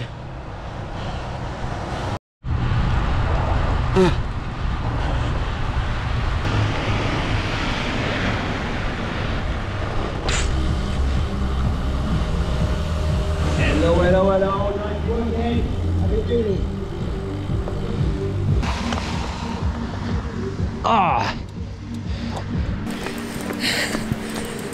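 Wind buffeting the microphone and tyre noise from a bicycle riding on a wet road, a steady low rumble, with music and brief voices mixed in.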